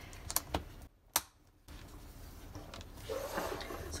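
Metal snap fastener on a leather strap being pressed shut with a sharp click about a second in, after a few lighter clicks, with soft handling of the leather around it.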